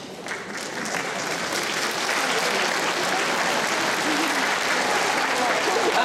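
Large audience applauding in a hall. The clapping starts just after the opening, builds over the first second or two, then holds steady.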